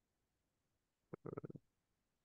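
Near silence on a video-call line, broken just after a second in by a brief, faint, low burst of sound lasting about half a second.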